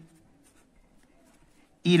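Faint scratching of a felt-tip marker writing on paper, with a man's voice speaking a word near the end.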